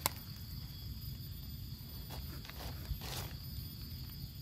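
Steady high-pitched drone of forest insects, with a few soft clicks at the start and a brief rustle about three seconds in.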